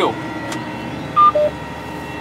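Two electronic beeps from the sprayer cab's controls, a higher tone then a shorter, lower one just after it, over the steady hum of the running machine in the cab.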